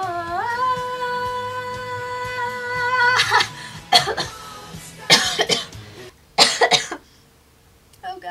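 A woman with a head cold holds one long sung note that slides up at the start, then breaks off into a fit of coughing: four harsh coughs over the next few seconds.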